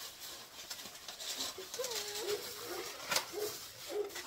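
Rustling from handling groceries, with one sharp knock about three seconds in as plastic egg cartons are picked up. Faint short wavering pitched sounds come and go underneath.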